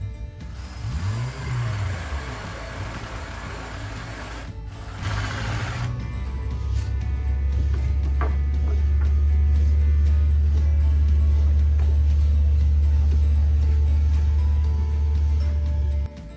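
Electric drill with a 1-1/4 inch spade bit boring a half-depth hole into a pine leg, a noisy run of about five seconds with a brief pause, over background music. In the second half a loud, steady low drone takes over.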